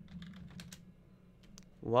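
Computer keyboard typing: a quick run of keystrokes in about the first second, then a few scattered taps before it goes quiet.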